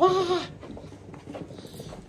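A man's voice calling a dog's name in a high, drawn-out, sing-song tone, ending about half a second in, followed by faint room noise.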